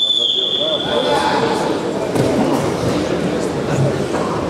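A referee's whistle: one long, steady, high blast that stops about a second in, over voices in the hall.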